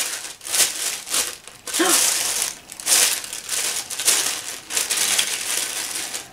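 A clear plastic bag crinkling in a run of irregular rustles as it is opened and handled.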